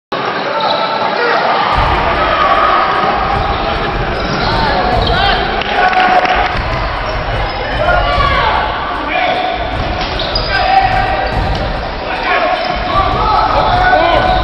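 Basketball game sounds echoing in a gym: a basketball bouncing on the hardwood floor, sneakers squeaking in short high chirps, and players' and spectators' voices calling out.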